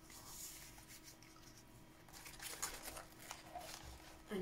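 Faint rustling of paper cards and envelopes being handled, with a few soft paper rustles or taps about two and a half to three and a half seconds in, as a page of a spiral-bound card book is turned.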